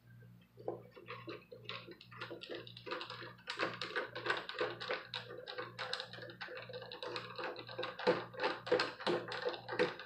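Phillips screwdriver turning out a back-cover screw on an HP Pavilion 20 all-in-one: quick, irregular clicks, several a second, starting about a second in. The clicking means the screw has come free of its thread.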